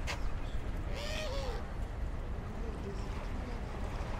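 Outdoor seaside ambience: a steady low rumble with faint distant voices, a click at the start, and a short wavering call about a second in.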